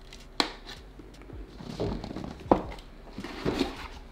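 Cardboard motherboard box being opened and handled: a sharp tap less than half a second in and another about two and a half seconds in, with softer rubbing and rustling of cardboard in between.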